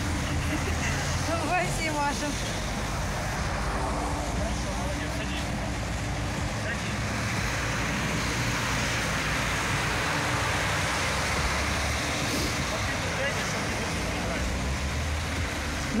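Steady road traffic noise from a snowy street, with a brief faint voice about two seconds in.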